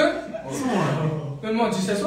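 Men's voices talking and chuckling.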